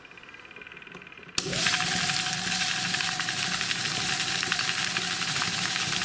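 Small hobby rock tumbler switched on with a click about a second and a half in, then running steadily: the motor's steady tone under the dense rattle and wash of stainless steel pellets, coins and water churning in the plastic barrel. The barrel is turning at a speed too fast for coins.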